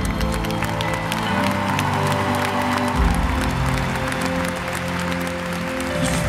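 Live band in a stadium playing held chords between sung lines, the chord changing about halfway through, with the crowd clapping and cheering over it.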